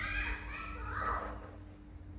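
Young otter squeaking: high chirping calls through the first second and a half, loudest about a second in.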